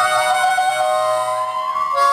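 Harmonica playing long held notes that bend up and down in pitch.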